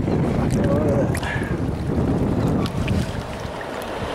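Muffled, steady rush and slosh of shallow seawater heard with the microphone at or under the surface, with a few faint clicks.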